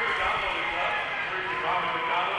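An indistinct man's voice speaking, with no words clear enough to make out.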